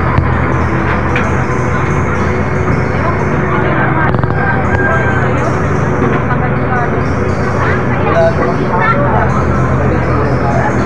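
Fire truck's engine running steadily close by, a loud low hum that holds the same pitch throughout, with people's voices over it.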